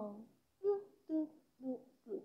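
A child's voice humming three short notes about half a second apart, each a step lower than the last, like a dismayed "hmm-hmm-hmm."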